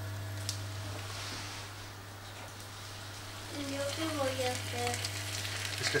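Strips of bacon going into hot oil in a non-stick frying pan and sizzling steadily.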